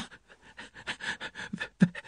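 A man's voice acting out laboured breathing: a sharp gasped 'Ah', then a quick run of short, panting gasps, the breathlessness of a woman in pain struggling to speak.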